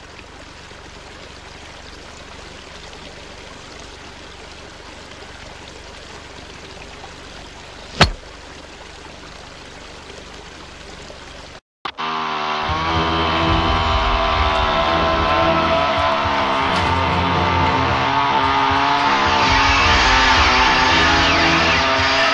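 A faint steady hiss with one sharp click about eight seconds in. Then, after a sudden cut, a chainsaw engine runs loudly and steadily, with a dense, even tone that grows slightly louder toward the end.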